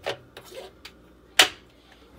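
Plastic lint filter being pushed back into its slot on the stainless drum wall of a Panda PAN56MGW2 portable washer: a few light clicks and knocks, then one sharp snap about a second and a half in as it seats.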